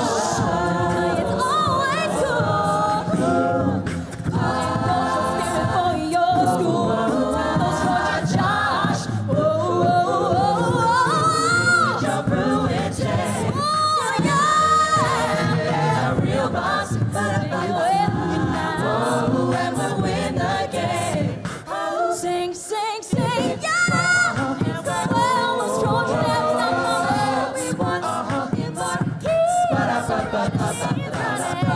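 A mixed-voice student a cappella group singing through a stage PA, several voices in harmony over a steady low vocal part. The low part drops out for a moment about two-thirds of the way through, then the full group comes back in.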